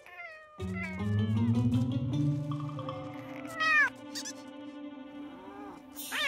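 Cartoon cat meowing once loudly, a rising-then-falling call just past the middle, over background music whose low bass part comes in about half a second in.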